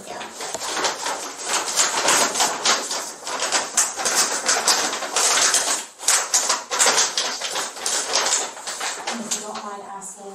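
Dense, rapid crackling and rustling close to the microphone, like plastic or paper being handled, which stops suddenly near the end.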